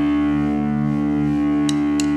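Distorted electric guitar holding one sustained chord through an effects unit, steady and unchanging, with two sharp ticks near the end.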